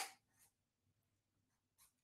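Near silence, with a couple of faint scratches of a felt-tip marker writing on paper.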